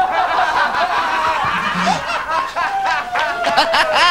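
Audience laughter: many voices laughing together, loudly and without a break.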